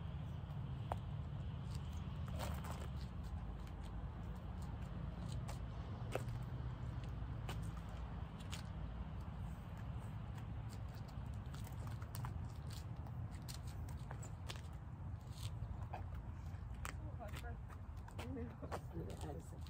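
Lacrosse balls being passed and caught between several players' sticks: scattered, irregular clicks and knocks of ball on stick heads over a steady low rumble.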